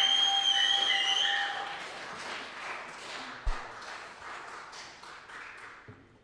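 Audience applause fading away over a few seconds, with loud gliding whistles and a held steady tone over it in the first second and a half. A single low thump comes about three and a half seconds in.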